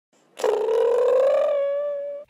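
A synthetic intro sound effect: one held, pitched cartoon-like tone that starts suddenly with a rapid flutter, rises slightly in pitch, then settles into a steady note and fades away.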